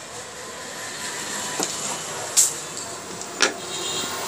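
Three short metallic clicks, the loudest about midway, as a screwdriver and small metal parts knock against a sewing machine during assembly, over a steady background hum.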